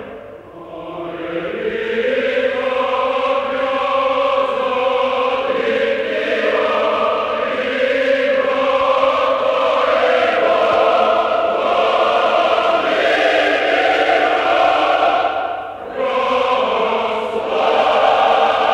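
Large choir singing slow, long-held chords in broad phrases, swelling up from quiet at the start, with a short break near the end before the next phrase.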